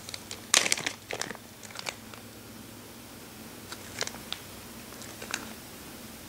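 Clear plastic clamshell wax-melt packaging crinkling and clicking as it is handled, a cluster of crackles in the first second or so, then a few scattered clicks.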